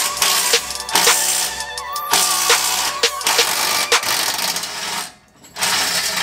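Cordless impact wrench hammering on exhaust bolts under the car, in a long run that stops suddenly about five seconds in and starts again briefly near the end. Background music with a steady beat plays over it.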